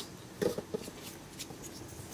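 Faint handling of a plastic action figure and its small parts, with a soft knock about half a second in.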